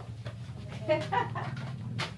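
A chicken clucking: a few short clucks about a second in, over a low steady hum.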